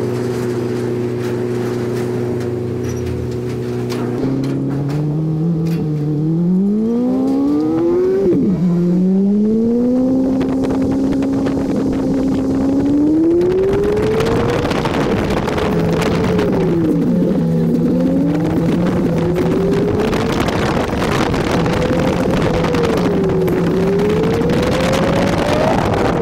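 Honda Civic Si's four-cylinder engine, heard from the car itself: it holds a steady note at first, then revs climb through a gear, drop at a shift about eight seconds in, and climb again. After that the revs rise and dip with the throttle, with wind rushing over the microphone from about halfway.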